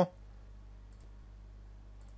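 Low, steady electrical hum on a computer microphone line, with two faint clicks about a second apart.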